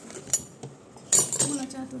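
Steel spoons clinking against dishes: a couple of sharp clinks, then a louder cluster of clatter about a second in.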